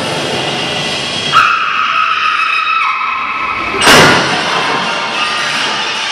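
Sound effects in a dance routine's backing track played over a hall's speakers: a sudden held screech like car tyres skidding about a second in, then a loud noisy crash-like burst near four seconds, between stretches of music.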